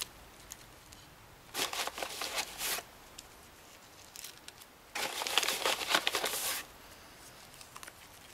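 Tulip bulbs being pressed by a gloved hand into gritty compost in a terracotta pot: two bursts of crinkling, scratchy rustling, the first about a second and a half in and a longer one at about five seconds.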